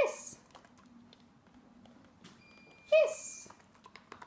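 A high-pitched spoken "Yes!" twice, about three seconds apart, a dog trainer's marker word for a correct response, with faint light ticks in between.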